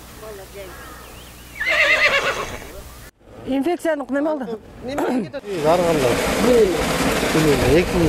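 A high, wavering cry about two seconds in. After a cut, people talk over a steady rushing noise of water gushing from a tanker truck's rear outlet.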